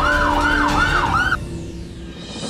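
Fire engine siren in a fast yelp, each wail rising and falling about three times a second over a low engine rumble. It stops suddenly about a second and a half in.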